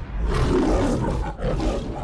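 A lion roaring in two parts, the second starting about one and a half seconds in: the MGM studio logo roar.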